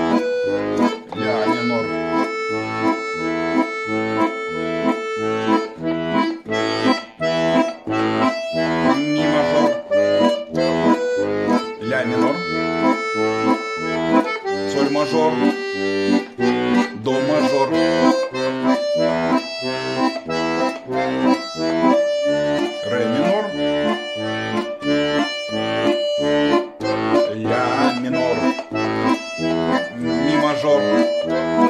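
Bayan (Russian button accordion) playing its left-hand bass-and-chord accompaniment: bass notes and chords alternate in a steady, even rhythm, with the chords changing every few seconds.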